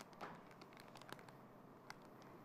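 Near silence: room tone with a few faint clicks from a zip's clear plastic packet being handled.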